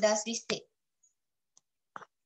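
A voice finishing a phrase, then a single sharp click about half a second in, followed by a gap of near silence and a faint click at the very end.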